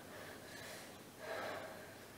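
Faint heavy breathing through the nose and mouth, with a stronger breath about a second and a quarter in.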